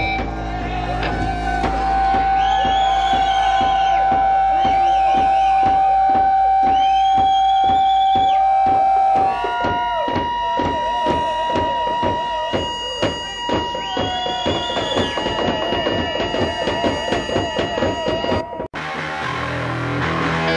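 Noise-punk band playing live: distorted electric guitar holds long droning tones over a steady pulsing rhythm, with the held pitch shifting higher about halfway through. The recording cuts off abruptly about a second before the end, and different guitar playing follows.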